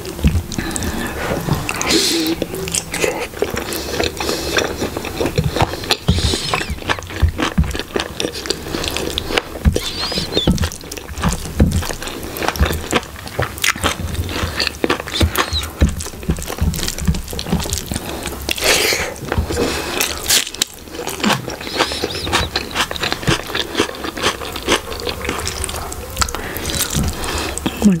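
Close-miked eating: wet chewing and lip smacks, with the squish of fingers tearing saucy chicken curry and mixing rice, in a dense irregular run of small clicks and smacks.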